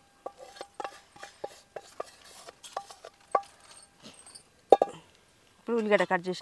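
Wooden spatula scraping and knocking inside a steel bowl: a string of irregular taps, the loudest one about four and a half seconds in.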